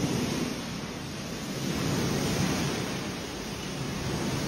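Swimming pool water sloshing in waves and splashing over the pool's edge, set in motion by an earthquake: a steady rushing noise.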